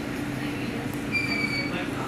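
Steady machine hum of running lab equipment, with a brief high-pitched whine lasting about half a second just past a second in, dropping slightly in pitch.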